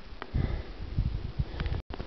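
Low, irregular rumbling and buffeting on the handheld camera's microphone as the camera is moved and the man bends down, cutting out abruptly near the end.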